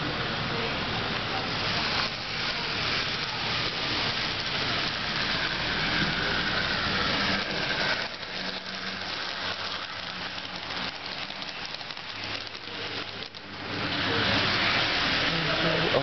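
Steady hissing background noise of an HO-scale model railroad running, with a model diesel locomotive and its train moving along the track and faint voices in the background; the noise drops somewhat about halfway through and swells again near the end.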